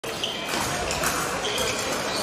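Fencing-hall ambience: fencers' footwork knocking on the pistes, with a few brief high squeaks of shoes and distant voices echoing in the large hall.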